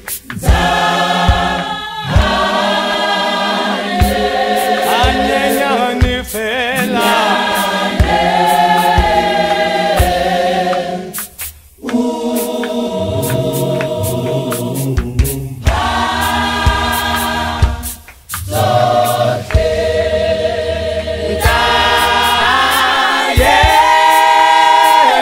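South African clap-and-tap gospel choir singing in harmony, with sharp hand claps keeping the beat. The singing drops out briefly twice, near the middle and about three quarters of the way through.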